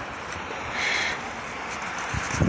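A large dog scraping at a firmly packed snowman, with one short, brighter scrape about a second in, over a steady outdoor hiss.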